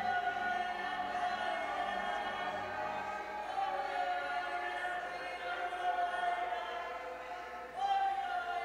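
Music with a choir holding long, sustained notes, the chord shifting about halfway through and a new note swelling in near the end.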